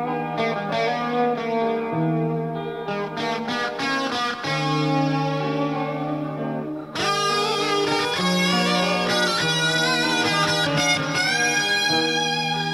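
Instrumental interlude of a slow rock ballad on electric guitars, moving through the chords G minor over D, G minor over F, E-flat major seventh and D7. About seven seconds in the sound grows louder and brighter, with a sustained lead guitar melody whose high notes waver with vibrato.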